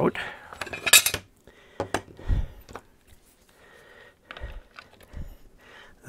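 Sharp metallic clinks and light knocks from a screwdriver and small metal hardware being handled and set down on a workbench while a screw and coax connector are taken out of a fixture box. The loudest clink comes about a second in, followed by scattered lighter clicks and a few dull knocks.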